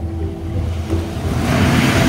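Background music with held notes. About a second and a half in, a rushing of water swells as a speeding motorboat cuts through the sea, throwing spray.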